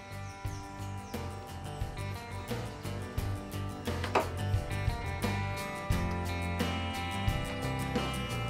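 Background music with held notes, a bass line and a steady beat.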